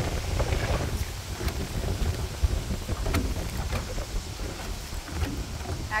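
Strong gusting wind buffeting the microphone as a low rumble, over choppy river water splashing against the boat, with a few light knocks.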